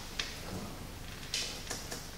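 Room tone in a meeting hall with a few small clicks and a short rustle, one sharp click just after the start and a brief rustling burst about a second and a half in.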